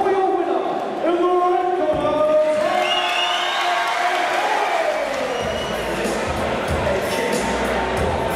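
Music and a voice over a fight hall's speakers, with a crowd cheering as the winner is declared. The voice's held, gliding pitch lines give way about five seconds in to fuller music with a bass line.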